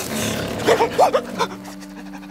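A metal sign creaking as it swings, in four or five short rising-and-falling squeaks about a second in, over a steady low drone.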